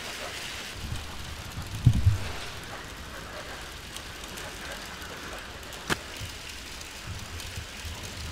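Steady background noise of an indoor duck shed, with a low thump about two seconds in and a single sharp click near six seconds.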